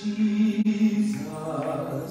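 A man's voice singing into a handheld microphone, holding one long low note for about a second before moving on.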